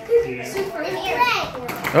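Children's voices, excited shouting and chatter during play.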